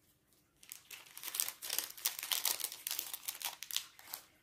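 Clear plastic bag of Panini stickers being handled and the stickers inside leafed through. It starts about half a second in as a run of irregular crinkles and small clicks.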